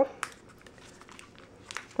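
Crinkling and a few sharp light clicks from a foil-backed plastic zip pouch being handled and opened by hand.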